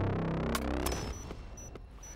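Movie-trailer sound design: a synthesized tone sweeping upward in pitch over a deep bass rumble, with two sharp hits within the first second, then fading away.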